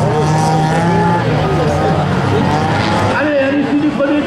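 Several small hatchback race cars' engines revving hard on a dirt track, their pitches rising and falling over one another as the drivers accelerate and lift through the corners.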